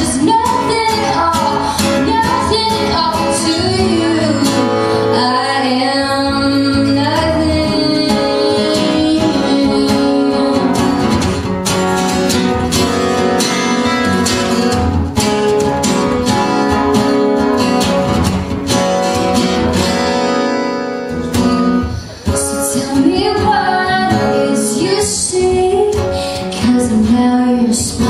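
A woman singing a song live while two acoustic guitars are strummed, with a brief drop in loudness a little past two-thirds of the way through.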